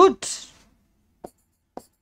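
Chalk writing on a blackboard: two short, sharp strokes about half a second apart as letters are drawn, after a spoken word at the very start.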